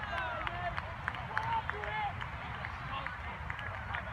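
Scattered distant shouts and calls of players and spectators across an open soccer field, short and overlapping, over a steady low wind rumble on the microphone.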